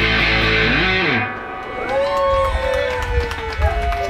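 Live rock band with electric guitar, bass and drums playing loudly, then stopping abruptly about a second in. A single voice then comes through the vocal microphone in held, bending notes over a low bass rumble.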